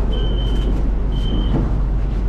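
Metro train door warning beeping: two high, steady beeps about a second apart over the low rumble of the train.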